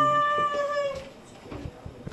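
One drawn-out, high-pitched call lasting about a second, steady and then falling slightly as it fades, followed by a sharp click near the end.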